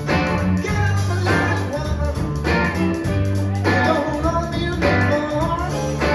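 Live rock band playing, with a man singing lead over electric guitar, bass and drums.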